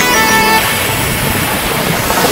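Zipline trolley running along a steel cable, a steady rushing whir with air noise over the microphone, taking over as music fades out in the first half-second.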